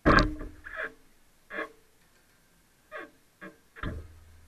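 Steel hammer striking the dented sheet-steel headlight surround of a Triumph TR250 front core support, held under pulling tension to coax the dent out. One loud ringing blow at the start, then about five lighter strikes over the next few seconds.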